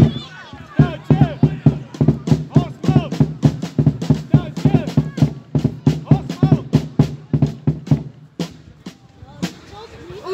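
Football supporters chanting in rhythm to a beaten drum, about three beats a second, stopping about eight seconds in, followed by a couple of single knocks.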